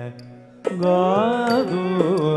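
Carnatic vocal music accompanying a Bharatanatyam varnam: a singer's melodic line with sliding, ornamented pitch breaks off briefly at the start and comes back in sharply about two-thirds of a second in.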